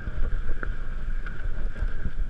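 Mountain bike rolling down a grassy singletrack, heard from a camera on the rider: a steady rumble of wind on the microphone and tyres over rough ground, with light rattles from the bike and a thin steady high hum underneath.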